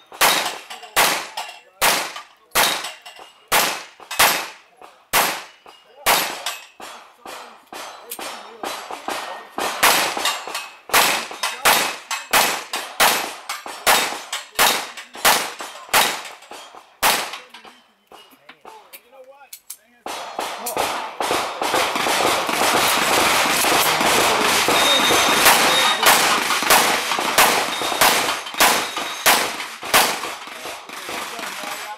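Semi-automatic pistol fired rapidly at steel plates, about two shots a second. Near the middle the shots stop for about three seconds during a fumbled magazine change, then the firing resumes over a loud steady hiss.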